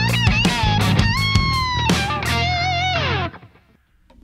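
Overdriven electric guitar lead from a Les Paul-style guitar through a Friedman BE-OD overdrive pedal into a vintage blackface Fender Bassman head, playing bent and vibrato notes over a lower sustained part. A little past three seconds in, the phrase ends with a note sliding down and dying away.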